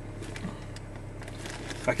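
Steady low hum of a truck idling in its cab while the engine warms up, with a few faint small clicks; a man's voice starts near the end.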